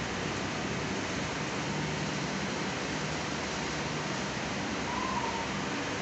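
Steady hiss of room background noise with a faint low hum; no distinct strokes or knocks stand out.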